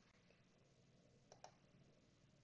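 Near silence: room tone, with two faint clicks close together a little past halfway.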